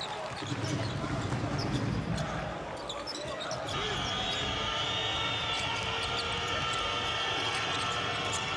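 Arena basketball game sound: the ball dribbling and sharp short squeaks and knocks on the hardwood court over the hall's crowd noise. A sustained high tone joins about halfway through.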